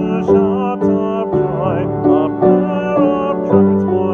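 A man singing a psalm setting with a wide vibrato over an instrumental accompaniment of held chords that change about every half second.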